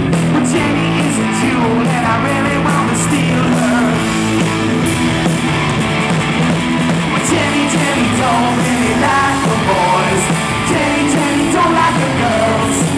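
Live rock band playing: distorted electric guitars, electric bass and a drum kit with steady cymbal hits, under a male lead vocal.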